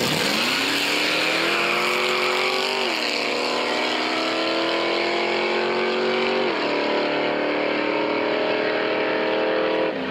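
Two drag-racing cars launching from the start line and accelerating hard away down the strip. The engine note climbs steadily and drops sharply at upshifts about three seconds in and again at about six and a half seconds.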